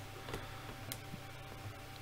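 Quiet room tone with a few faint, irregularly spaced clicks and a thin steady tone.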